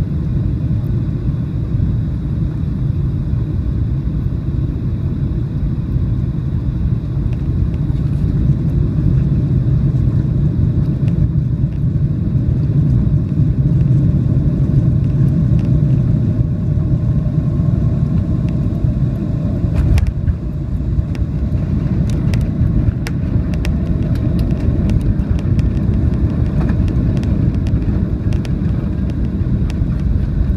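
Cabin noise of a Boeing 737 on final approach and landing: a steady low rumble of engines and airflow. About two-thirds of the way through there is a single thump as it touches down, followed by a scatter of rattles and clicks as it rolls down the runway.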